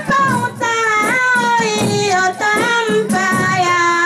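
Tari wedding song: a high voice sings long held notes that slide up and down, over a regular light percussion beat.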